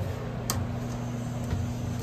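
Elevator car push-buttons clicking as they are pressed: one sharp click about half a second in, a fainter one later, and another at the end. A steady low hum from the elevator cab runs underneath.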